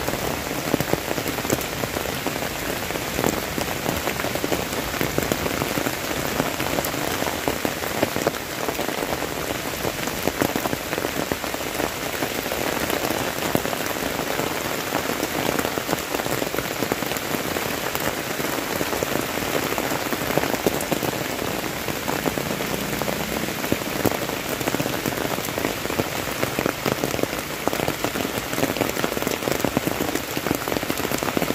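Steady heavy rain falling on a concrete lane and dense foliage: an even hiss, dotted with many sharp hits of single drops.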